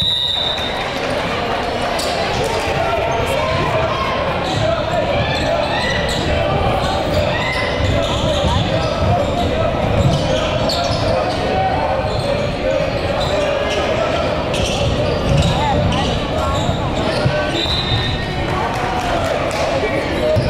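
Live sound of a basketball game in a gym: a basketball dribbled on the hardwood floor over steady crowd chatter, with a few short high sneaker squeaks.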